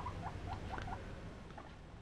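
Young guinea pig making a quick run of faint, short squeaks, about four a second, over the first second.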